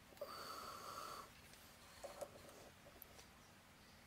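Near silence, broken by a short breath-like hiss lasting about a second near the start and a few faint clicks about two seconds in.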